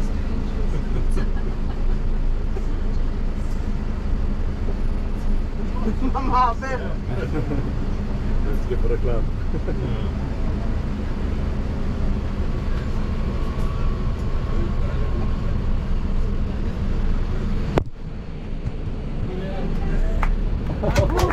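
Bus engine and road noise heard from inside the cabin: a steady low rumble as the bus moves slowly. A short voice cuts in about six seconds in, and the rumble dips suddenly near the end.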